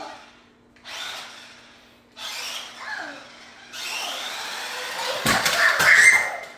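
Remote-control toy monster truck's electric motor whirring in three spurts as it is driven, with the last spurt the loudest and a few sharp knocks near the end.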